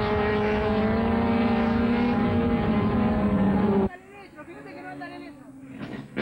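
A touring race car's engine running hard at high revs on the circuit, a steady high engine note. It cuts off abruptly about four seconds in, leaving faint voices in the background.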